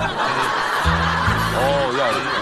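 Variety-show background music with steady bass notes, with people chuckling and snickering over it.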